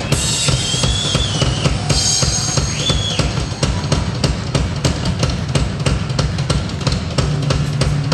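Drum kit played fast and loud, a dense run of bass drum, snare and tom hits many times a second, with cymbals washing over the first few seconds.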